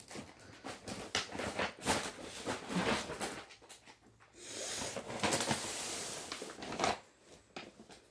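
Packaged grocery items being handled and sorted: crinkling plastic wrappers and light knocks of packages on a surface, in irregular small clicks and rustles. A longer, steadier rustle runs through the middle.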